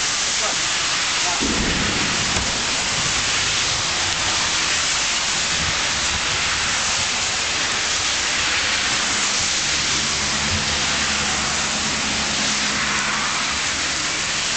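Heavy rain pouring steadily in a thunderstorm, with a low rumble of thunder starting about a second and a half in.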